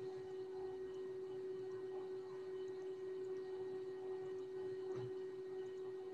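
A faint steady hum: one unchanging held tone over low background hiss.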